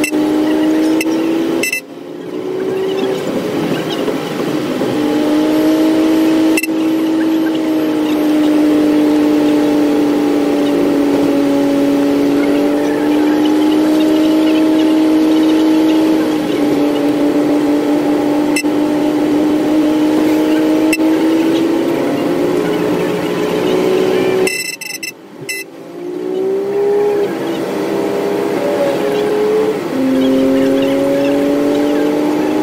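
Bus cruising at motorway speed, heard from inside the cabin: a steady engine and drivetrain drone carrying a whining hum that drifts slowly in pitch. The sound dips out briefly about two seconds in and again near 25 seconds. After the second dip the whine glides upward in pitch.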